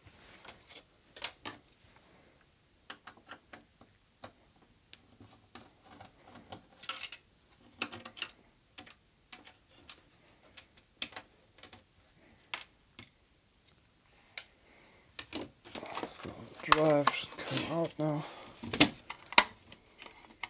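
A screwdriver and hands working on an Amiga 600's plastic case: scattered light clicks and knocks as screws are undone and the case is handled.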